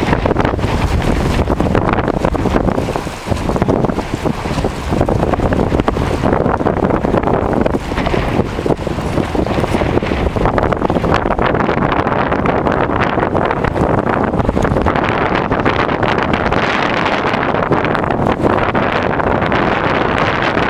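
Strong gusty wind buffeting the camera microphone, a loud continuous rumble and hiss that dips briefly about three seconds in.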